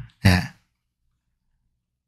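A man's single short spoken "ye" (Korean "yes") about a quarter-second in, then silence.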